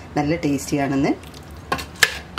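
Mutton masala frying in a steel pot while a metal spoon stirs and scrapes through it, ending in a sharp clink of the spoon against the pot. A voice speaks briefly in the first second.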